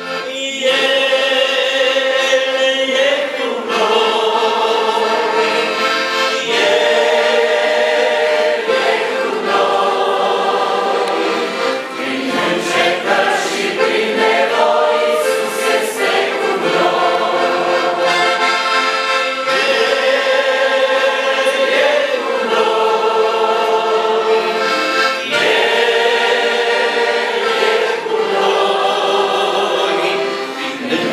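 A Romanian gospel hymn sung by several voices together, accompanied by an accordion playing sustained chords.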